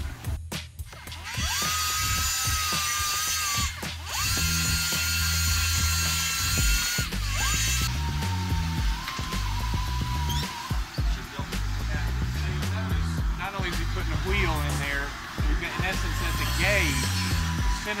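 A bottom bracket facing machine running with a steady high whine, in two runs of a few seconds each in the first half, over background music.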